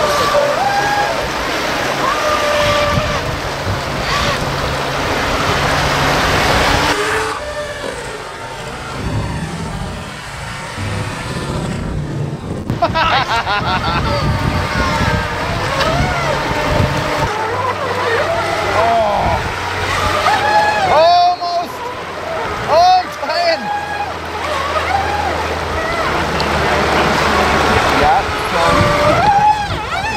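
Small radio-controlled jet boats with brushless electric motors whining, the pitch rising and falling repeatedly as the throttle is blipped, over the rush of water through a shallow, rocky riffle.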